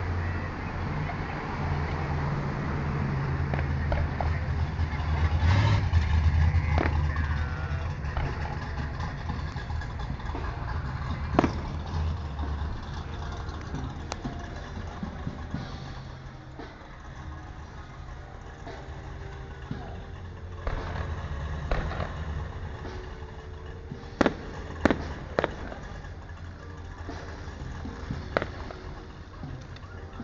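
Aerial fireworks bursting, with sharp bangs about eleven seconds in and a quick run of three near the end, over a low rumble that fades about halfway through.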